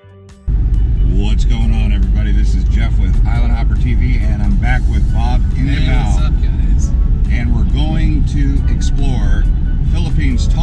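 Steady low rumble of a moving car heard from inside the cabin, road and engine noise, starting suddenly about half a second in.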